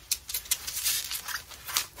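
Bubble wrap crinkling and rustling in irregular bursts as it is folded and pulled tight around a small item by hand.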